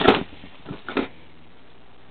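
Brown paper carrier bag rustling as hands rummage through it: a sharp crinkle at the start and two softer rustles about a second in.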